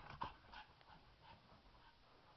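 A pug breathing faintly in short, quick puffs.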